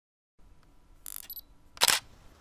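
Digital camera taking a photo: a quieter short high-pitched electronic sound about a second in, then one loud shutter click near the end.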